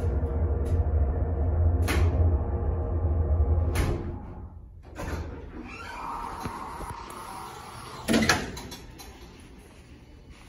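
Schindler 330A hydraulic elevator: a low, steady hum from the cab ride that stops about four seconds in as the car arrives. The door operator then slides the cab door open with a whir, and a loud thump comes about eight seconds in. The uploader notes these doors could use a bit of help.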